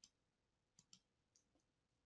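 Near silence with a few faint computer-mouse clicks: one at the start and a couple just under a second in.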